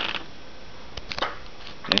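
Low room noise with a few short, soft clicks, about a second in and again near the end.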